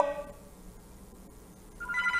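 A quiet lull, then near the end a steady electronic telephone ring starts: the studio's call-in line ringing.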